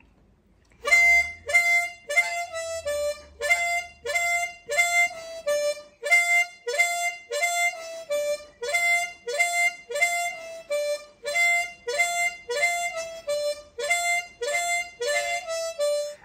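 Diatonic blues harmonica in C playing a repeated lick of short notes, each sliding up into the channel 5 draw F (a glissando), with lower 5 blow and 4 draw notes between the runs. It starts about a second in.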